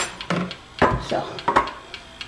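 Metal food cans knocking and clinking against each other and the countertop as they are handled: several sharp knocks.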